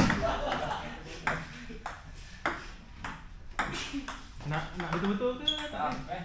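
Table tennis ball in a rally, clicking sharply off the paddles and the table roughly every half second.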